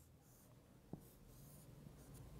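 Faint marker strokes on a whiteboard, with a single light tap about a second in, as a rectangle is drawn.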